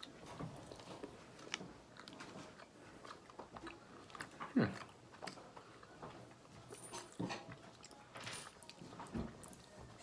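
Quiet chewing of a soft cream-filled chocolate, with faint scattered mouth clicks. A short falling sound comes about halfway through.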